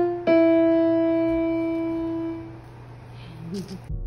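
Portable electronic keyboard with a piano sound: a single note is struck shortly after the start and left to ring, fading away over about two seconds.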